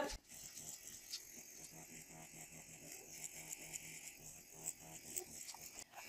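Deminuage NanoPen microneedling pen buzzing faintly and steadily as its needle tip is moved over the skin.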